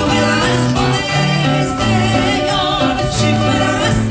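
A man and a woman singing a Christian song together, accompanied by their two acoustic guitars.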